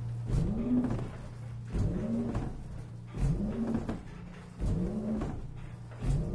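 Large bronze church bell, cast by Cavadini in 1931, swinging full-circle in a wooden frame. Its clapper strikes about every one and a half seconds, and a deep, steady hum (the great bell's low B-flat) rings on between strokes.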